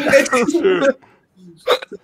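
Men laughing: a burst of laughter that breaks off about a second in, then one short chuckle near the end.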